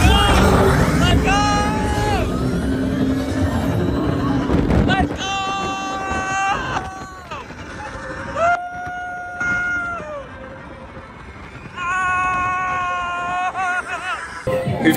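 Roller coaster riders screaming in long, held cries during the ride. A heavy low rumble of the coaster runs under them for the first five seconds or so.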